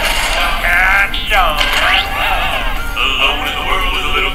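Jaw harp (mouth harp) being twanged, playing a buzzing melody whose overtones sweep up and down over a steady drone.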